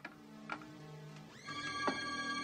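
Horror film score: low held notes, then a shrill, high sustained chord slides in about one and a half seconds in, with a few short knocks along the way.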